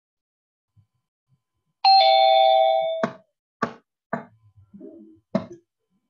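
A two-note electronic chime, a higher note falling to a lower one, about a second long and the loudest thing here. It is followed by three or four sharp separate clicks or knocks.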